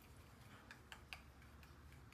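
A few faint, irregular ticks of a small paintbrush tapping and stirring against the side of a small plastic cup of mica paint, otherwise near silence.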